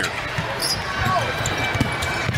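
Basketball bouncing on a hardwood arena court, several short thuds, over a steady hum of arena crowd noise, with a brief high squeak a little over half a second in.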